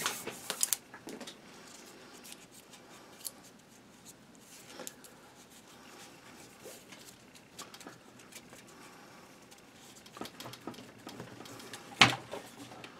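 Paracord being wrapped around a metal underfolder stock arm and pulled through a loop: faint rustling and scraping of the cord, with scattered light clicks and taps, more of them near the start and the end.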